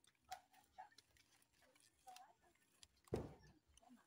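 Mostly near silence with a few faint ticks, then one short rustle or knock about three seconds in as a hand takes hold of an old bed's leg.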